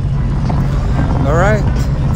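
Jet ski engine running steadily while under way, with heavy wind noise on the microphone. A voice is heard briefly about a second and a half in.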